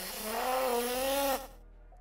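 A person straining in pain through clenched teeth: a hissing breath joined by a drawn-out, slightly rising whine that cuts off about a second and a half in.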